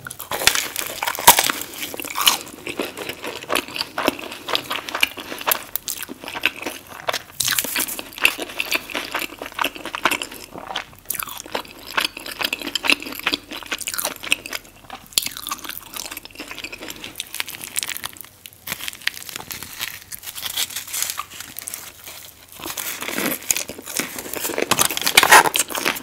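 Close-miked crunching bites into a crispy fried burrito shell, followed by steady crackly chewing. The loudest crunches come in the first couple of seconds, and the crunching picks up again near the end.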